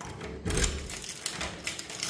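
A key turning in a door's cylinder lock: a series of metallic clicks and rattles, the first and loudest about half a second in.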